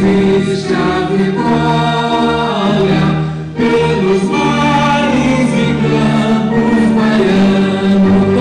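A hymn sung in Portuguese, with a man's voice on a microphone and other voices joining in over musical accompaniment. The notes are long and held.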